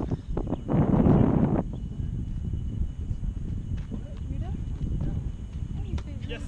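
Wind buffeting an outdoor camera microphone: a loud gust early on, then a steady lower rumble.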